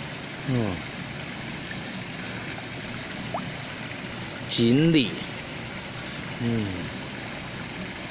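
Steady rush of flowing water in a koi pond. A person's voice makes three short untranscribed sounds: about half a second in, around the middle, and near six and a half seconds.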